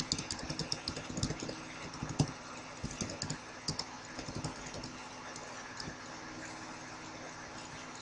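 Computer keyboard being typed on: quick runs of key clicks through the first half, thinning out later, over a steady low electrical hum.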